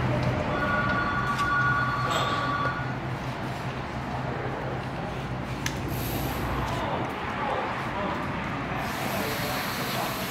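Tire-shop work noise: a steady two-note whine for about two seconds, starting about half a second in, over a continuous mechanical bed, with a few sharp clicks.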